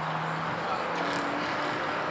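Car engines running out of sight elsewhere on a race circuit: a steady hum under a noisy haze, with a faint engine tone that starts about a second in and slowly rises in pitch.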